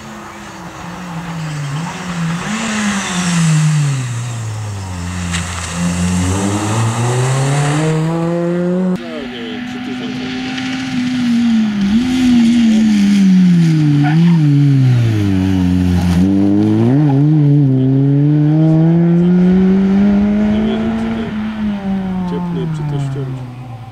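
Peugeot 206 rally car's four-cylinder engine driven hard on a rally stage, its note falling and then climbing again under acceleration several times. The sound jumps abruptly twice, about nine and sixteen seconds in.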